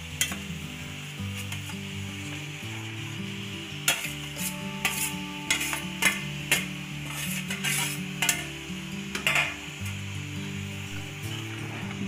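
A metal spoon scraping and clinking against a steel plate and an aluminium pot as mashed potato is scraped in and stirred into thick cooked sago. The sharp scrapes come in a run between about four and ten seconds in, over soft background music with steady low notes.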